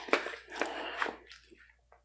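Knife and fork cutting a meatball in marinara sauce: soft wet squishing with a few light clicks of the cutlery against the plastic tray, faint, in the first second or so.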